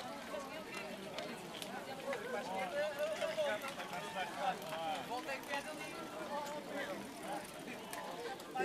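Crowd babble: many voices of mountain bikers and spectators talking and calling over one another as a large pack of riders rolls off at a mass start, with scattered sharp clicks.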